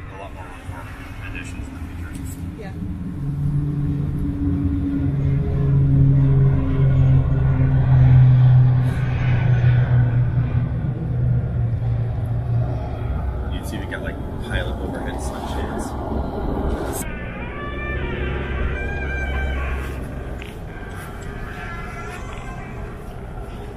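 Helicopter machinery running with a steady low hum. The hum builds over the first several seconds, then eases about two-thirds of the way through, with indistinct voices over it.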